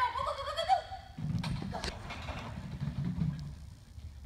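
A woman's high, wavering, wordless call of praise to a small dog at the end of an agility run, lasting about the first second. After it come softer thuds and shuffling of movement on artificial turf.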